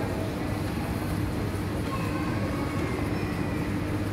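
Steady low mechanical hum and rumble with a constant drone, unchanging in level, and faint distant voices about two seconds in.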